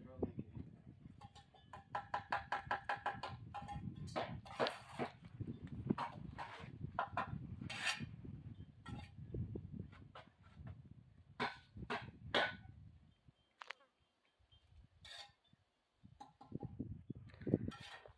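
Bricklaying with a steel trowel and hollow ceramic bricks: scattered sharp knocks and scrapes as bricks are set and tapped into mortar, dying away to near silence about three-quarters of the way through.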